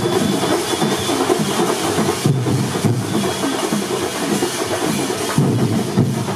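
Festival procession sound: steady music with some percussion over a dense crowd-like din.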